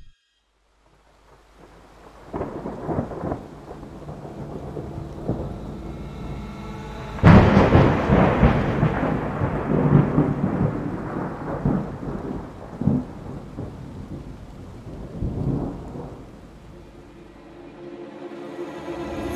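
Thunderstorm: rain with rolling thunder, starting after about a second of silence. A sudden loud thunderclap about seven seconds in rumbles away over several seconds, with smaller rumbles before and after it.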